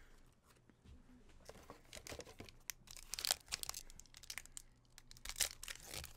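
Foil wrapper of a Pokémon trading-card booster pack crinkling and being torn open. A quick, irregular run of crackles starts about a second and a half in.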